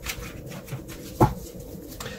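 A tarot deck being handled and shuffled by hand, with soft card clicks and a sharp tap about a second in.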